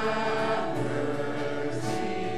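Church choir singing a sung part of the Mass, in long held notes that change pitch every half second or so over a steady low note.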